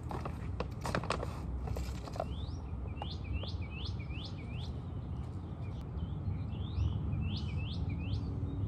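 A songbird calling, repeating a short rising note about twice a second from about two seconds in, over a steady low outdoor rumble. A few light knocks come in the first two seconds.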